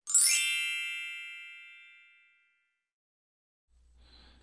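A bright chime sound effect: a cluster of high ringing tones that strikes at once and fades out over about two seconds.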